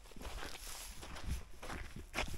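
Soft, irregular footsteps on snow-covered ground, with faint rustling of clothing.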